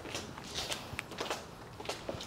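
Faint scattered clicks and shuffling footsteps from someone moving around the vehicle, with no steady motor sound.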